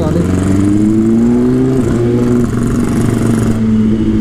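BMW S1000RR's inline-four engine accelerating. Its pitch rises, drops at a gear change about two seconds in, then climbs again and levels off, with wind rushing over the microphone.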